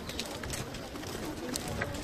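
Footsteps of a group walking on a stone floor, scattered short clicks, with faint indistinct voices in the background.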